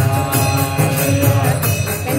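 Devotional bhajan singing: a man's voice holding long, slowly moving notes over a steady beat of jingling percussion.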